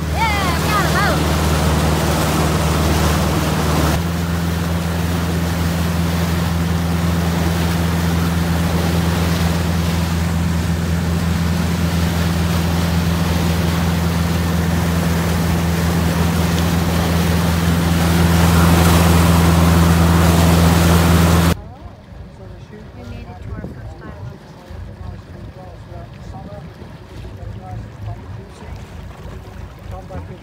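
Motorboat engine running steadily at speed under the rush of its churning wake, a little louder for a few seconds before it stops abruptly about two-thirds of the way in. After that there is only a much quieter background of water.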